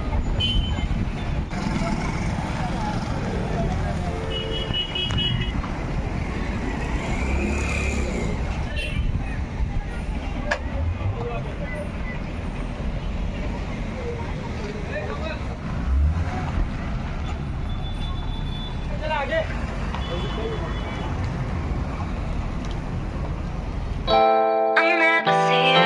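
Street traffic: vehicle engines and road noise run steadily, with a few short horn toots and scattered voices in the background.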